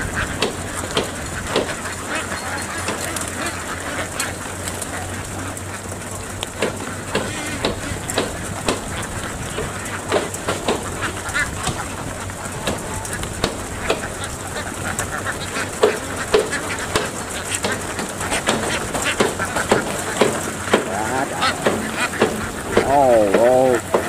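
A large flock of domestic ducks quacking and calling together, a dense continuous chatter of many short calls, as they are moved off a duck boat onto a rice field.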